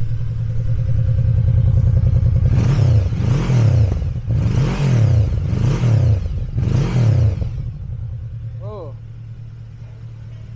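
Yamaha VMAX 1700's V4 engine idling, then revved four times in quick succession, the revs rising and falling with each blip, before it settles back to idle. The sound is 'sangar': fierce.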